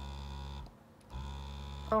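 Medela Freestyle Flex breast pump running on a table: a steady low buzzing hum of its motor that comes in two runs of just under a second each, with a short pause between, as the pump cycles its suction. It is not too loud on the table, which the owner puts down to its rubber-coated housing.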